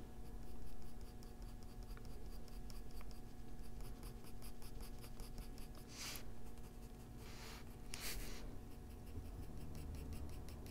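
Coloured pencil scratching on toned gray drawing paper in quick short strokes, with a few longer, louder scratches about six and eight seconds in.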